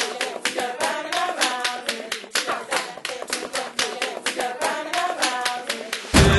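Rhythmic hand clapping, about five claps a second, with voices underneath.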